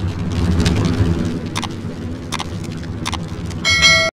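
End-card sound effects: a steady low rumble under the flaming title, broken by three sharp clicks spaced about three quarters of a second apart. Near the end comes a bright ringing chime, the loudest sound, as the subscribe button and notification bell appear.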